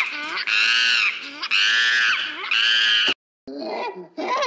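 Four high-pitched, monkey-like screeches in quick succession, each rising and falling in pitch. They cut off abruptly about three seconds in.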